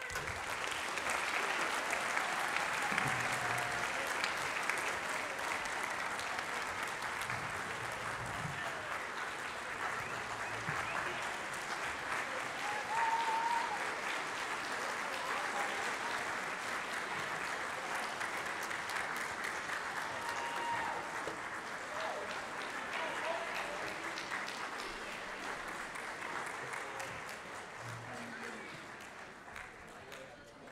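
Concert audience applauding in a large hall. The applause breaks out suddenly as a school band's piece ends and carries on steadily, easing slightly near the end, with a few voices calling out among it.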